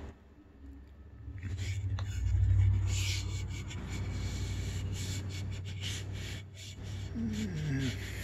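Hand rubbing and sliding along the edge of a guitar neck's fretboard, feeling the metal fret ends, with scattered scrapes and small clicks over low handling rumble. A short voiced sound comes near the end.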